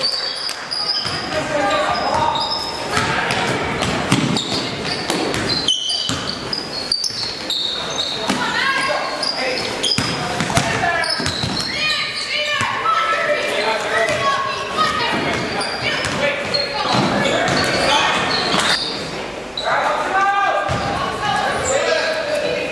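Basketball bouncing on a hardwood gym floor during play, with many short high sneaker squeaks and voices calling out, echoing in the large hall.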